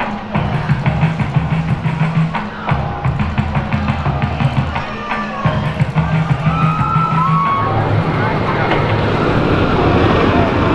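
Background music with a steady beat and bass line that stops about three-quarters of the way in. It gives way to a rising rush of noise with riders' voices as the dive coaster's train is released down its vertical drop.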